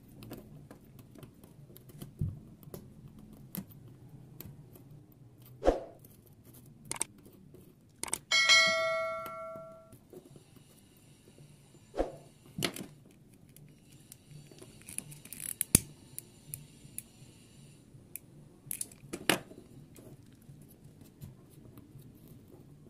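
Metal hobby-knife blade and tweezers clicking, tapping and scraping against a hard floor while picking through the charred remains of a burnt SD card, with scattered sharp clicks. About eight seconds in, a loud bell-like ding rings out and fades over about two seconds.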